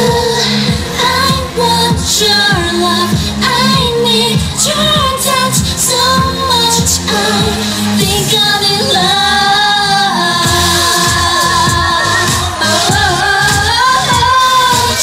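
Dance-pop song with a female voice singing over a steady beat, played loud through the hall's sound system.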